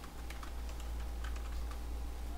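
Typing on a computer keyboard: irregular keystroke clicks, several a second, over a steady low hum.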